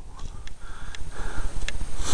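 Low rumble of wind and handling noise on a handheld microphone, with a few light clicks and short breaths taken between the handler's commands.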